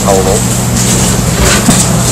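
A man talking over a noisy telephone line. His voice is faint and broken, buried under a loud, steady electrical hum and hiss from the line.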